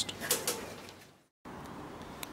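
Low room noise with a few faint clicks, broken about a second and a quarter in by a brief dead-silent gap where the recording is cut, then steady low room noise.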